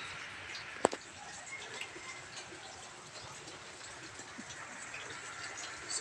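Faint steady background hiss, broken by one sharp click a little under a second in.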